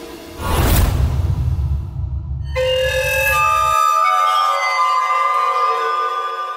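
Dramatic TV-serial background score: a sudden deep booming hit about half a second in, rumbling on for about three seconds, then high held notes of a wind-instrument-like melody that carry to the end.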